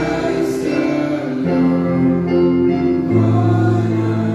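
Small mixed group of young men's and women's voices singing a Christian song together through microphones, holding long notes, over keyboard accompaniment.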